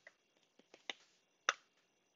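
A few sharp, isolated keyboard keystrokes as a sudo password is typed and entered, the loudest click about one and a half seconds in.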